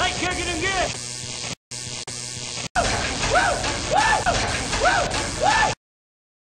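A man's voice shouting "woo" again and again, each shout a quick rise and fall in pitch, over a noisy backing. The sound drops out briefly twice and cuts off abruptly near the end.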